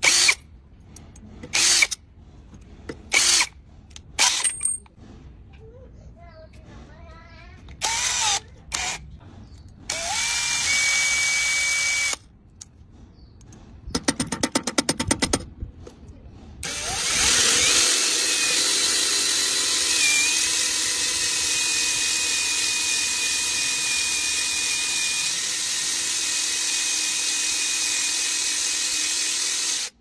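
Power drill driving a self-drilling screw into a rusty iron weight. Short bursts and knocks come first, then a fast run of clicks, and from a little past halfway the drill runs steadily under load with a thin high whine.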